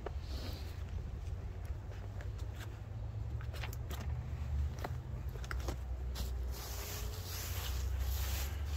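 Scattered light clicks and scuffs of boots, rope and platform as a person shifts his weight on a rope-tethered tree saddle platform and steps down off it, over a low steady rumble. A rustling hiss comes in for the last two seconds.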